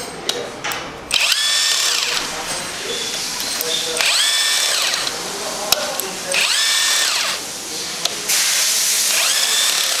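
Cordless power driver spinning the main bearing cap bolts loose on an EA888 engine block, in four short runs. Each run is a whine that rises as the motor spins up, holds, then falls away as the bolt comes free.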